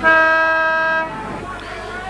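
Football ground siren sounding one loud, steady tone for about a second, then cutting off: the signal that starts the final quarter of an Australian rules football match.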